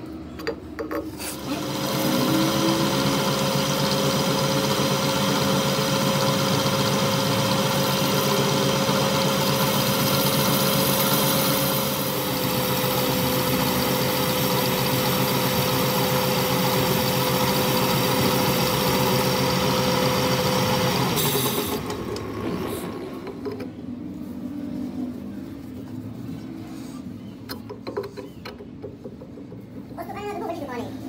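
Metal lathe starting up about a second and a half in and running for about twenty seconds with a steady hum, its boring tool cutting inside a new brass bush in an air compressor housing. It stops abruptly, and then there are faint metal clicks as a shaft is tried in the bush by hand.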